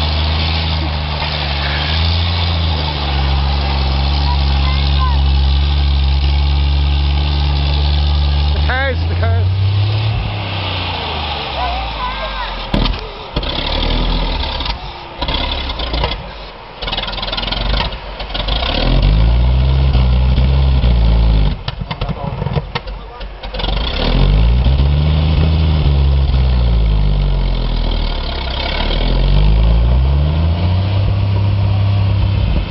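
Engine of a 1937 Morris Magirus turntable-ladder fire engine running as the vehicle drives slowly over grass. The engine note rises and falls repeatedly and turns uneven and broken in the middle stretch.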